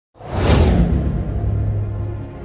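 A cinematic whoosh sound effect that swells just after the start and fades within the first second, over a deep, sustained low music drone: the opening of a video logo intro.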